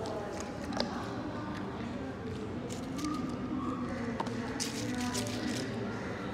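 Indistinct chatter of people talking in the room, with a couple of sharp clicks and a brief rustling noise about five seconds in.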